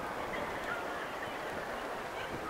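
Busy city street ambience: a steady wash of noise with a few brief, faint high chirps.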